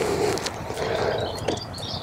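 Outdoor ambience: a steady rush of noise with a few light handling clicks, and faint high bird chirps in the second half.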